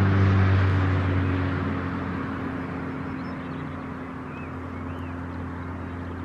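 An engine or motor running with a steady low hum, louder at first and easing off over the first two seconds, then holding steady. A few faint bird chirps come through midway.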